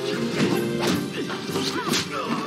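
Film soundtrack music with three sharp crash-like hits over it.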